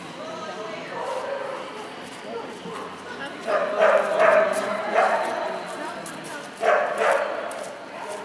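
A dog barking repeatedly: a run of sharp barks around the middle, then two more near the end, over people's voices.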